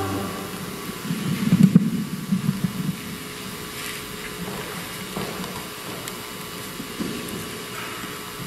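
Handheld microphone being handled and set back into its stand clip, giving irregular low rumbles and bumps for about two seconds, just as the last sung note dies away. After that there is only a steady background hum.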